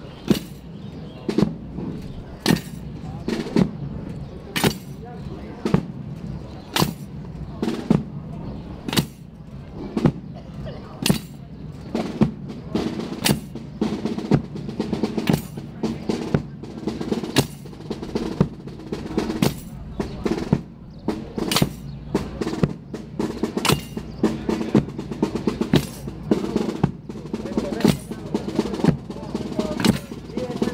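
Procession drums beating a slow, steady march, with a loud stroke about every two seconds and softer strokes between. The strokes grow denser near the end.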